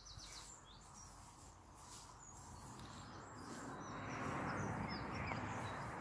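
Small birds chirping now and then over outdoor background noise, with the rushing noise of road traffic swelling from about halfway through as a vehicle passes on a nearby road.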